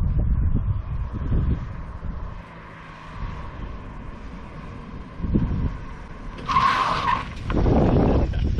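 Subaru BRZ with a rebuilt FA20 flat-four approaching and sliding in close, its tires squealing briefly about six and a half seconds in, followed by a loud surge of car noise as it arrives.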